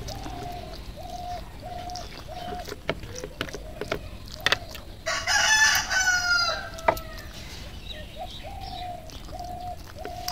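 A rooster crows once, loudly, about five seconds in. Before and after it, a bird gives runs of short, evenly spaced calls, about two a second, and a few sharp clicks are heard.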